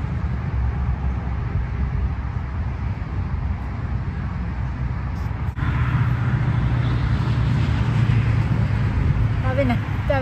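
Steady road traffic noise, a continuous low hum and hiss of passing vehicles, which changes a little past halfway to a steadier low hum with more hiss.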